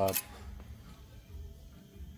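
The end of a man's spoken word, then faint room tone with a low hum.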